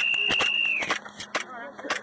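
A high, steady whistled note lasting just under a second, sliding up into it and dropping off at the end. Sharp, irregular cracks of airsoft gunfire sound through it.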